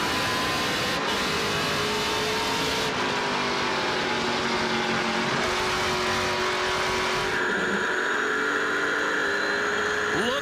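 Onboard sound of NASCAR Pinty's Series V8 stock cars running at speed in close company, the engine note holding fairly steady and drifting slightly lower. The sound changes character abruptly about seven seconds in.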